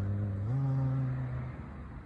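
A low voice holding a chanted, hummed note, then moving up to a second slightly higher held note about half a second in, which fades out.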